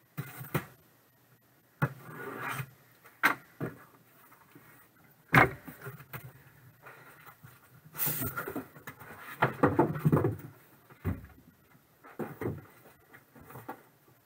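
A cardboard shipping case and the boxes inside being handled: irregular knocks, scrapes and rustles of cardboard, with one sharp knock about five seconds in and a busier spell of scraping around eight to ten seconds.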